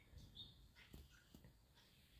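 Near silence, with a few faint, brief blips.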